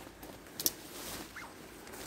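Faint rustling of ivy and dry leaf litter, with one short sharp crackle about a third of the way in.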